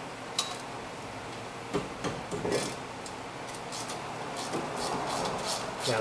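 Socket wrench being worked on the 13 mm rear brake caliper mounting bracket bolts to break them loose: scattered metal clicks and clinks, with a quicker run of ticks near the end.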